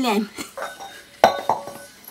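A woman's voice trailing off, then two sharp clinks with a short ring, a little past a second in: hard objects such as dishes or metal utensils knocking together.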